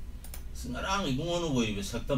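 A man talking, with a few quick sharp clicks just before his voice comes in.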